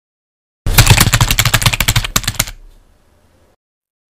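A long burst of rapid automatic gunfire, about a dozen shots a second for nearly two seconds with a brief break partway, then a fading echo.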